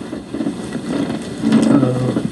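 A man's voice holding low, drawn-out hesitation sounds ('uhh') while he searches for an answer, a faint one about half a second in and a longer, louder one near the end.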